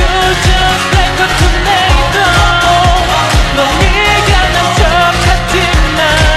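K-pop girl-group song pitched down into a 'male version': a pop backing track with a steady kick drum about twice a second under sung vocal lines.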